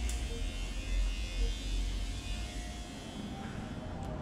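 Electric hair clippers buzzing steadily, falling away about three seconds in.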